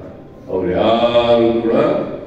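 A voice over a hall's public-address system holds one long, drawn-out chant-like phrase, starting about half a second in after a short pause.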